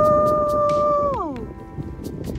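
A person's long whoop, held on one high pitch for over a second and then sliding down as it ends, over background music with a steady beat.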